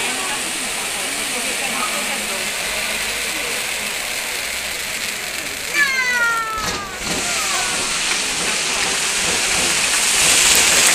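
Ground fountain fireworks spraying sparks with a steady, loud hiss. About six seconds in, a brief falling tone cuts across it.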